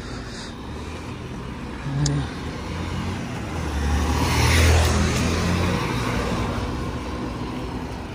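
Road traffic and wind rushing over the microphone of a moving bicycle: a vehicle passing on the road swells to its loudest about halfway through, then fades.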